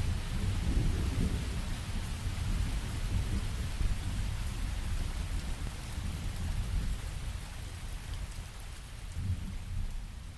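Steady rain with a deep rumble of thunder, slowly fading out toward the end.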